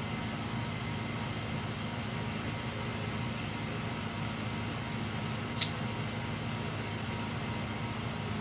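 Steady background hum with a high hiss, like a running machine, and one short sharp click about five and a half seconds in.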